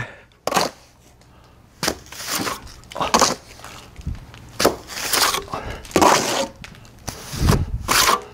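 Steel trowel and hawk working wet cement stucco brown coat: mortar scraped off the board and hawk and spread onto the wall, a series of rough scrapes and slaps about a second or so apart.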